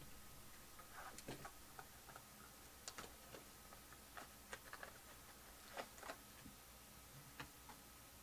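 Faint, irregular crinkles and clicks of clear cellophane shrink-wrap being peeled off a trading-card box.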